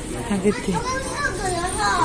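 Children's voices chattering and calling, higher pitched than the woman's brief word near the start.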